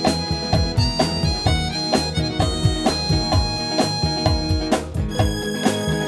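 Live band playing an instrumental passage: long held melody notes over a steady drum beat, with electric guitars and keyboards. About five seconds in, a brief rushing swell leads into a change of melody.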